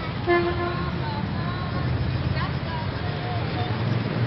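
A vehicle horn toots once, briefly, about a third of a second in, over a steady rumble of city traffic.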